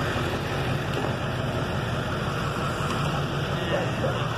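A vehicle engine idling steadily with a low hum, under faint background voices.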